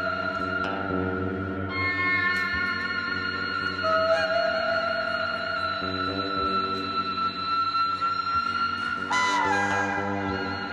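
Free-improvised live music from a band of saxophone, guitar, drums and another wind player: long, overlapping held tones that shift pitch now and then, with a few light percussive touches. Near the end one note slides down.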